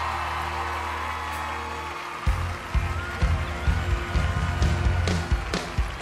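Instrumental background music: held chords over a steady bass, with a drum beat coming in about two seconds in.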